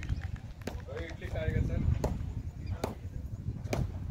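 Distant voices of cricket players calling on the field, with several sharp clicks and a steady low rumble.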